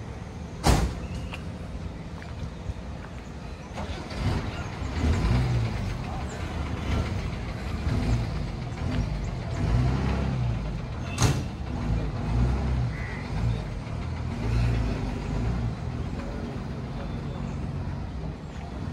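A diesel bus engine running nearby, its low rumble rising and falling from about four seconds in, with two sharp bursts, one just under a second in and another about eleven seconds in.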